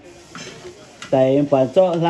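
Kitchen scissors cutting into cooked crab shell, with faint crunching and scraping in the first second. A voice then starts speaking.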